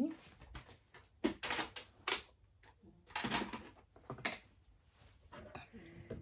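Sheet of scored cardstock being handled on a wooden tabletop: a few short paper rustles and scrapes, spaced about a second apart.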